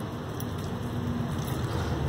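Carbonated grape soda poured from a plastic bottle into a steel cup, a steady noisy splash and fizz that grows a little louder as the pour gets going.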